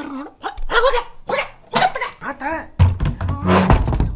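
A man's wordless, exaggerated vocal noises, bark- or growl-like. About three seconds in, a heavy low thud rumbles on to the end.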